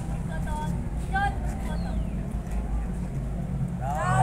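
Faint, scattered voices over a steady low hum.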